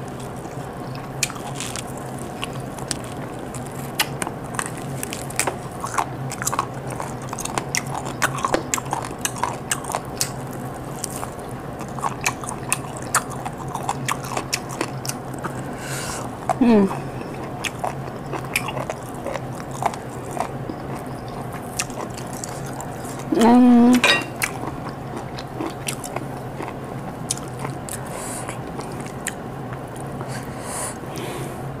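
Close-up eating sounds: a person biting and chewing tender boiled chicken off the bone, with many small wet clicks throughout. Two short hummed "mm" sounds of enjoyment come in, one a little past halfway and one near the three-quarter mark.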